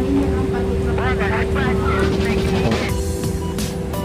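Takeout counter room sound: a steady hum with one constant tone, voices in the background, and several sharp clicks in the last second.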